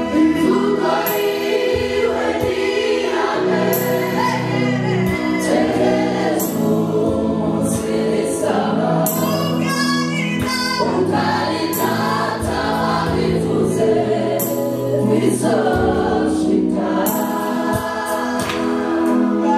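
A church choir singing a gospel worship song, a woman leading on microphone with the group singing along, over steady low bass notes that shift every second or two.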